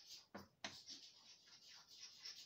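Faint scratching of chalk writing on a blackboard, a series of short strokes.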